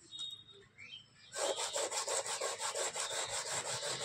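Hands rubbing rapidly back and forth over a carved wooden panel, a rhythmic scraping of several strokes a second that starts about a third of the way in.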